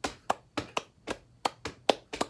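Hands clapping a three-against-two polyrhythm at a fast tempo: about four sharp claps a second in an uneven, lopsided pattern, some strokes louder than others.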